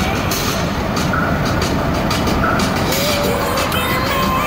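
Steady road noise inside a moving pickup truck's cab, with children's voices faintly rising over it.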